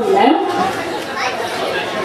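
Indistinct chatter of several voices talking over one another, at a steady moderate level.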